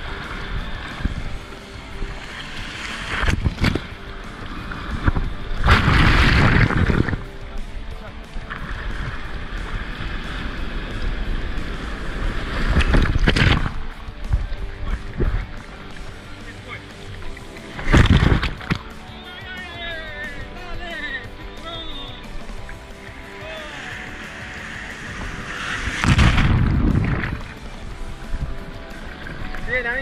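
Shallow surf foaming around a camera held at water level, with about five loud surges of breaking, splashing water washing over it. Background music plays throughout.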